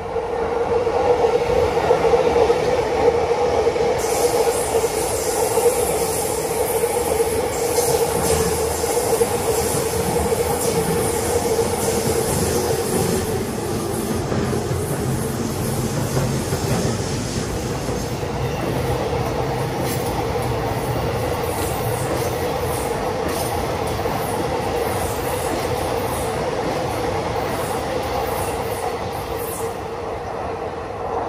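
Chuo Line rapid trains (orange-striped E233 series) running through the station without stopping. Wheel and rail noise comes with a steady whine, loudest in the first half as the first train passes. A second train approaches near the end.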